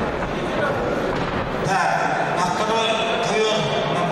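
Voices in a sports hall: a background of crowd chatter, with men's voices calling out more clearly from about halfway through.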